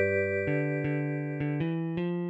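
Computer playback of a four-part song arrangement in a synthesized keyboard sound: a chord is held while a few single bass notes move underneath.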